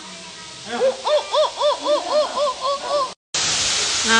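An animal call: a series of about nine hooting notes, each rising and falling in pitch, coming quicker and fading toward the end. A sudden break near the end gives way to a steady hiss.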